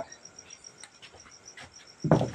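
Faint, steady chirping of a cricket: a high pulse repeating evenly several times a second, with a few faint clicks.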